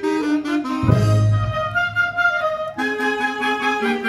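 A town wind band plays a tune, with saxophones and clarinets over brass. Low bass notes from the tuba come in about a second in and drop out shortly before the end.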